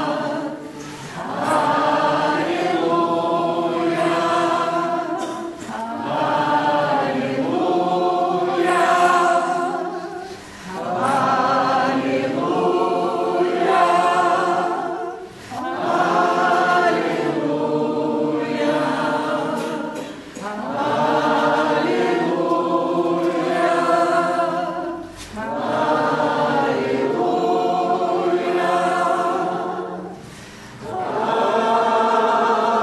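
A congregation of mixed voices singing together in slow, sustained phrases about five seconds long, with a short breath between each phrase.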